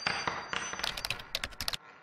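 Logo intro sound effect: a metallic ringing hit, then a quick run of sharp clicks that stops abruptly a little before two seconds in, leaving a fading echo.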